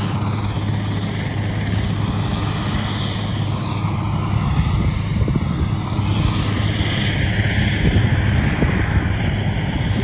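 An aircraft engine running at the airfield: a steady, loud drone with a low hum and a slowly shifting, whooshing upper tone, a little noisy.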